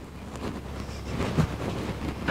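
Steady low background rumble, wind-like on the microphone, with a few faint knocks.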